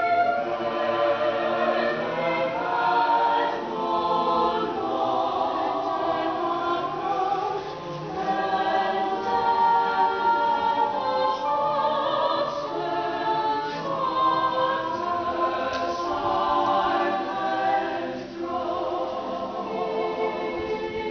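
A mixed-voice high school madrigal group of about thirteen singers singing a cappella in parts, with short breaks between phrases.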